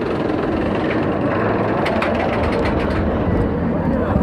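Roller coaster train rumbling along its track, heard from a rider's seat, with a quick run of rattling clicks about two seconds in.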